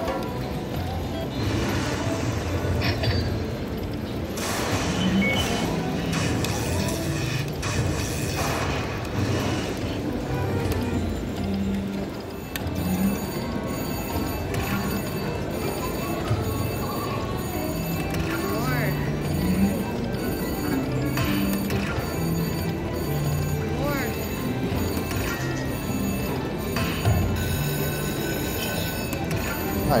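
Aristocrat Lightning Link Tiki Fire slot machine playing its hold-and-spin bonus music: a looping tune of low held notes, with short hits as fireball coins land and lock on the reels.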